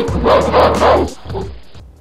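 A short, loud intro sting: music with an animal-like call mixed in, strongest in the first second and cutting off suddenly near the end.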